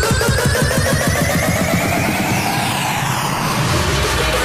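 Frenchcore music at a build-up: a fast kick drum roll under a rising synth sweep. The kicks thin out near the end into a steady low rumble.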